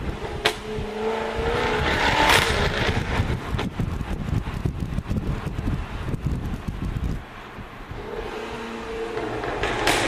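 Jaguar F-Type R coupe's supercharged V8 revving hard under acceleration, heard from inside the cabin, with sharp exhaust cracks about half a second and two seconds in. The engine eases off for a moment past seven seconds, then revs up again, with another crack near the end.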